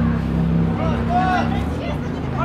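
Shouted calls from players on an outdoor football pitch, a couple of drawn-out cries in the middle, over a steady low drone.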